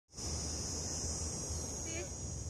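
Insects buzzing in one steady, high-pitched drone, over a low rumble of wind on the microphone.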